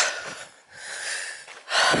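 A walker breathing hard while climbing a steep lane: one airy breath, about a second long, in the middle of a pause in talk.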